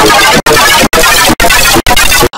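Loud, distorted cacophony of several copies of the same audio stacked at different pitch shifts, a 'G Major' style effects edit. It is chopped into chunks by sudden short dropouts about twice a second.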